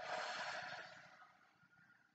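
A woman's long, audible exhale, strong at first and fading out over about a second and a half, as she breathes out into a rounded-spine cat pose.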